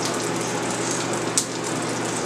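Stockpot of seafood-boil water at a rolling boil, a steady bubbling rush, with one sharp click about one and a half seconds in.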